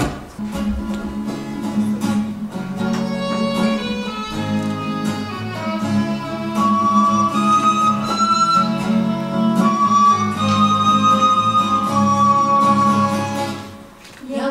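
Instrumental introduction on acoustic guitar and violin: the guitar plays steady chords while the violin plays a held, lyrical melody. It dies away just before the end.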